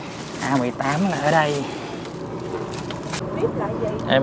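A voice talking briefly, about half a second to a second and a half in, then a few fainter words near the end, over steady background noise and a few short clicks.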